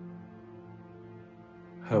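Background score: one low sustained note held steadily and slowly fading. A man starts speaking at the very end.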